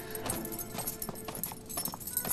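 Footsteps on a hard floor: a quick, irregular run of clicks, with soft background music underneath.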